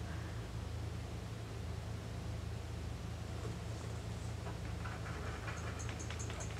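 Room tone: a steady low hum with faint hiss, and no distinct events.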